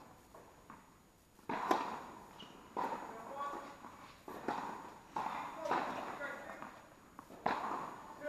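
Tennis balls struck by rackets and bouncing on an indoor hard court, sharp hits coming every second or so, each ringing briefly in the echo of a large hall.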